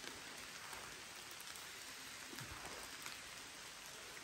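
Light rain falling on forest foliage: a faint, steady hiss with a few small ticks.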